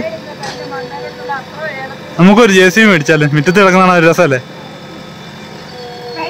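JCB backhoe loader's diesel engine running steadily, with a voice over it that is loud for about two seconds in the middle.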